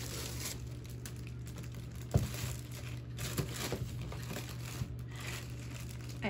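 Cardboard and plastic camera packaging crinkling and rustling as it is handled during an unboxing, with one sharp knock about two seconds in and a few lighter clicks a little later.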